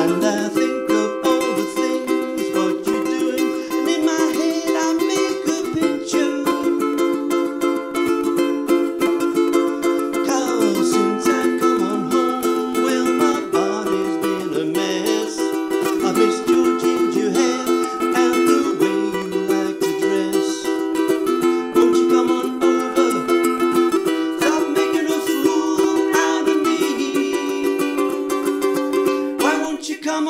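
Ukulele strummed in a steady, even rhythm, ringing through changing chords of the song's verse and pre-chorus.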